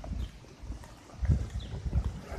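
Footsteps of a person walking: a series of dull low thumps about every half second, picked up by a phone microphone carried in the hand.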